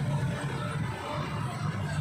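Busy street traffic, with a passenger jeepney and a van driving past close by: a steady low engine and road rumble.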